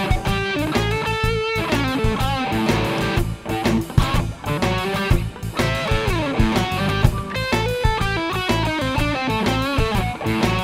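Electric guitar playing a lean funk-blues riff built on the root, sixth and flat seventh, with octaves and short chord punctuations, over a shuffle backing groove with bass and drums. Several notes glide in pitch.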